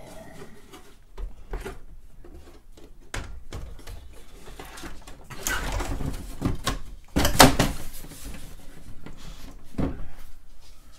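Plastic case top of a TRS-80 Model 4 computer being lowered and fitted back down over the keyboard, with scrapes and knocks and a loud clatter of the case seating about seven seconds in.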